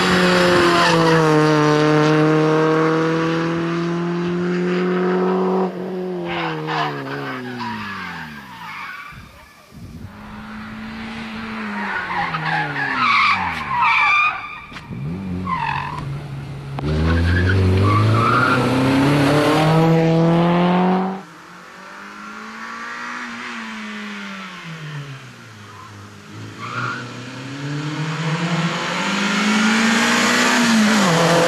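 Renault Clio rally car driven hard on tarmac: the engine revs rise and fall through gear changes and lifts, with tyres squealing through a tight chicane in the middle. The engine note drops suddenly about two-thirds through, then climbs again near the end.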